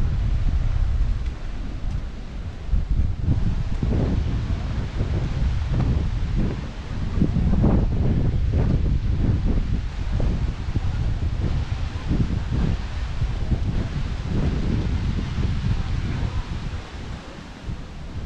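Wind buffeting the microphone in uneven gusts, a loud low rumble that rises and falls throughout, over a fainter hiss of wind and leaves.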